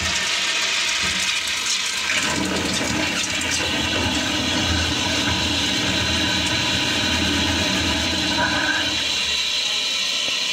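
Tankless push-button flush-valve toilet flushing: water rushes into the bowl with a steady loud hiss and swirl. A deeper rumble of the bowl siphoning out joins in from about two seconds in and fades near the end, while the hissing inflow carries on.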